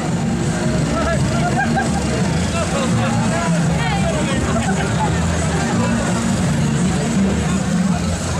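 Crowd of parade spectators and marchers chattering and calling out, with a vehicle engine running low and steady underneath.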